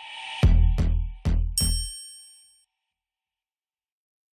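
Logo sting sound effect: a rising swell, then four heavy hits in quick succession, the last one with a bright metallic ring that fades out within about a second.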